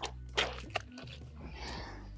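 Wet squelching as a chunk of ripe watermelon flesh is torn out of a split watermelon by hand, with a couple of short wet snaps in the first second.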